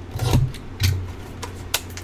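Trading card box and pack rubbing and scraping under the hands as the pack is slid out: two short rasping scrapes in the first second, then a sharp tick near the end. A steady low hum runs underneath.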